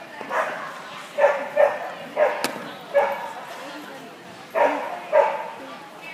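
A dog barking in short sharp bursts, about seven barks in irregular groups, with a single sharp click about two and a half seconds in.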